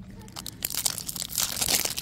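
Foil wrapper of a baseball card pack crinkling and crackling as hands work it open, a dense run of sharp crackles that starts about half a second in and grows louder toward the end.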